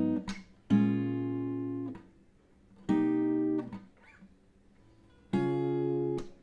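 Acoustic guitar chords from a G#m7–Bbm7–Cm7–B/C# progression, plucked one at a time. Each chord is cut off sharply by a slap on the strings that mutes it. One ringing chord is stopped about a third of a second in, then three more chords follow with pauses between them.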